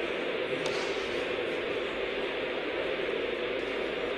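Portable television hissing with static, a steady even noise: the set is getting no clear signal through its indoor aerial.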